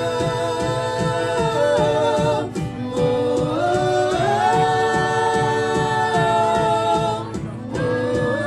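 Live worship band: several voices sing together in long held notes over the band's accompaniment. The voices drop out briefly between phrases, about two and a half seconds in and again near the end.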